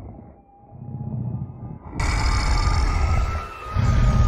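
Dramatic TV-show soundtrack for a werewolf scene. A low rumble gives way, about two seconds in, to a sudden loud musical hit with a held high tone. Near the end a deep creature growl begins.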